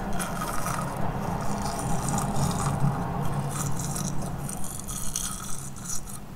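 Close-miked mouth sounds of nibbling a spoolie brush: its bristles scraping and clicking against teeth and lips in a dense, crisp crackle.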